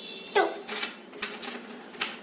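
Felt-tip whiteboard marker tapping and squeaking on a whiteboard as a digit is written: a few sharp taps, the first, about a third of a second in, with a short falling squeak.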